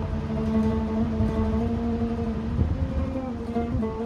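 Travel oud with gear tuners and a flat back, plucked with a pick: one long sustained note, then a couple of shorter notes near the end.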